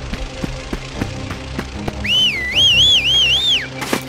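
A person whistling a short warbling phrase, the pitch rising and falling about three times, starting about halfway in over low background music. A sharp knock comes just before the end.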